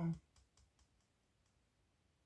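A few faint, light clicks in the first second and a half, from fingers touching the edges of a fanned-out deck of tarot cards.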